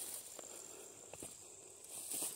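Faint footsteps through grass, a few soft steps over a quiet outdoor background.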